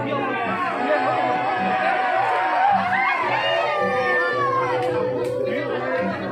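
Large crowd of men shouting and calling out together as they carry a Balinese cremation tower, over a steady beat of about two a second. A long held note runs through the second half.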